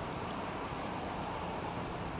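Steam locomotive R707 and its train approaching from a distance: a steady rushing rumble with no distinct exhaust beats.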